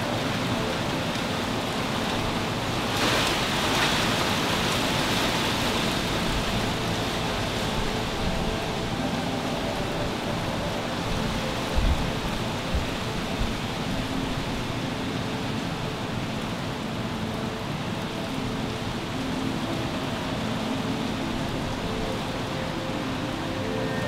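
Steady rushing background noise with no speech, swelling briefly about three seconds in.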